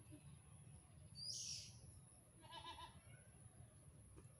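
Near silence, with a faint short high chirp about a second in and a brief quavering animal call a little past halfway.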